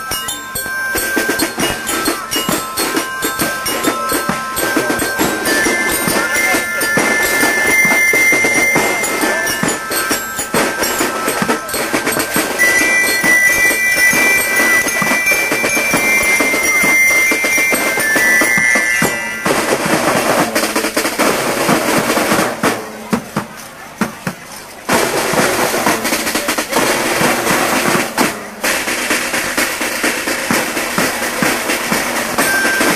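Marching band playing outdoors: dense drumming with a high stepping tune over it, then about two-thirds of the way through the tune stops and the drumming carries on, dipping briefly in loudness.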